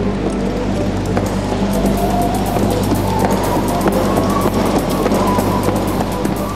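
Background music over the steady low hum of a horse treadmill's motor running, with faint clicks of hooves on the moving belt from about two seconds in.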